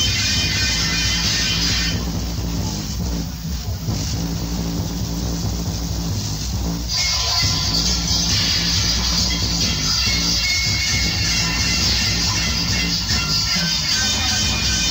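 Reggae played loud through a sound system, with a heavy, steady bass line. About two seconds in the treble drops away, leaving mainly bass, and comes back in full about five seconds later.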